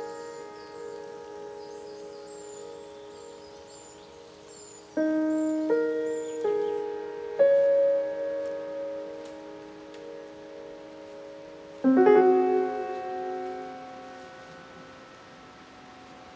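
Background music: slow, sparse piano chords, each struck and left to ring and fade, a few in quick succession about five seconds in and another near twelve seconds.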